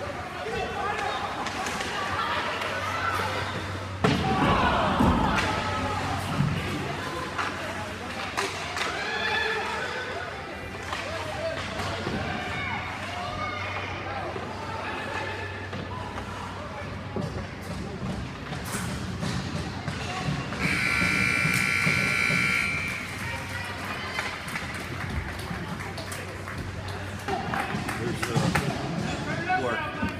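Indoor ice rink during a youth hockey game: spectator chatter over a steady low hum, with a loud thud about four seconds in, and later a steady high-pitched signal blast lasting about two seconds.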